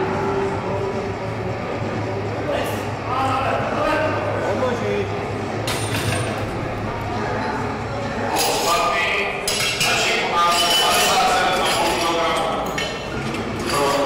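Metal clanks and clinks from a powerlifting bench-press barbell and its weight plates, growing busier in the second half as loaders handle the plates. Voices and chatter echo through a large sports hall.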